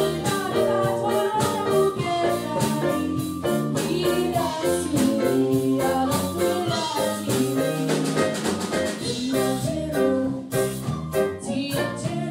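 Live band playing a song: a woman singing lead over electric bass guitar, keyboards and a drum kit, with a steady beat.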